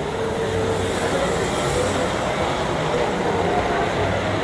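Large-scale garden model train, a diesel-outline locomotive pulling freight cars, rolling past close by on a curved track with a steady running noise.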